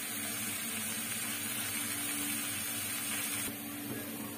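Steady kitchen background noise: an even hiss with a low steady hum under it, the highest part of the hiss dropping away near the end.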